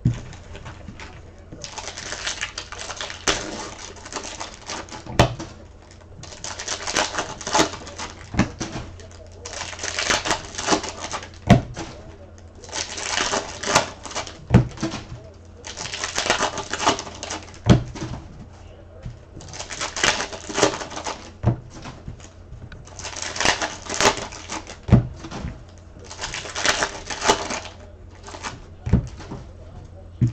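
Foil trading-card pack wrappers being torn open and crinkled in repeated bursts every few seconds, with sharp taps and clicks from the cards and packs being handled in between.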